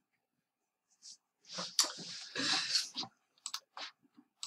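Clicking and rustling at a computer, keyboard or mouse handled close to the microphone: a rustling burst about a second and a half in, then a few sharp separate clicks near the end.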